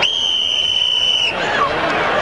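Ringside buzzer sounding one steady high-pitched tone for about a second and a quarter, then cutting off suddenly, over crowd noise.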